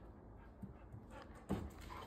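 A dog panting softly, then a sharp thump about one and a half seconds in and a few lighter footfalls as it gets up and moves off down carpeted stairs.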